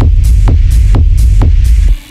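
Dark techno: a heavy kick drum about twice a second over a thick droning bass, with off-beat hi-hats between the kicks. Right at the end the kick and bass cut out into a breakdown.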